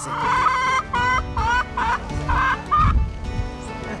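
Free-range laying hens clucking: one long call, then a quick run of about five short calls, fading out about three seconds in.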